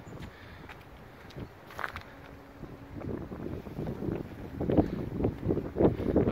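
Outdoor ambience of wind on the microphone and footsteps on a path, growing louder over the last few seconds.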